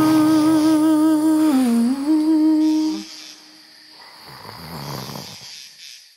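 A voice humming the lullaby's last phrase: one long held note with vibrato that dips and comes back up, ending about three seconds in. After a short pause comes a soft, breathy, sleepy sound that swells and fades away.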